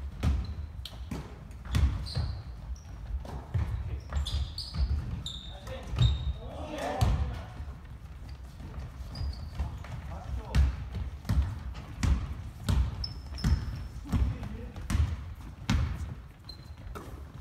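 Basketball bouncing on a hardwood gym floor, at first irregularly and then in a steady dribble of about three bounces every two seconds toward the end, with short high sneaker squeaks.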